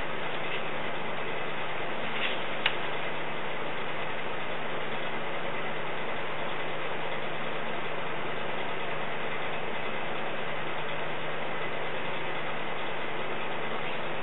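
Steady background hiss with a faint low hum underneath, and one small click a little under three seconds in.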